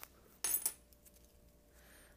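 Metal scissors snipping a clear plastic bag: a sharp click at the start, then a short, bright metallic clink about half a second in.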